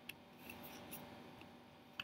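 A few faint, short clicks and light rustling over quiet room tone with a steady low hum, the sharpest click near the end.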